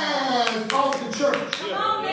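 A voice singing in long, gliding notes, with a quick run of about six hand claps in the middle.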